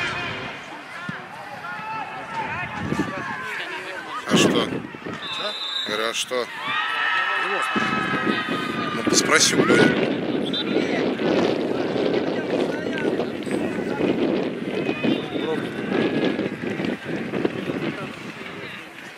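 Voices of players shouting and calling out on a football pitch, with a sharp knock about four seconds in and a brief high steady whistle tone soon after.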